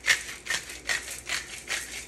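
Pepper being dispensed over a raw beef tenderloin in a run of short, evenly spaced bursts, about two and a half a second.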